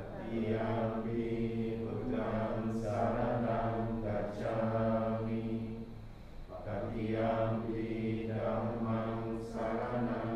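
Buddhist monks chanting Pali verses in a steady, low monotone, with a short break for breath about six and a half seconds in.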